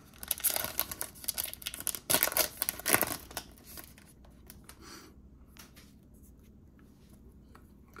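A foil baseball card pack being torn open by hand, crinkling and crackling for about three seconds. Then only faint rustles and ticks as the cards are handled.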